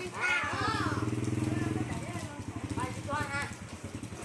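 Small step-through motorcycle engine running at low speed as the bike moves off slowly: a steady, pulsing drone that fades after about two seconds. Voices call briefly over it.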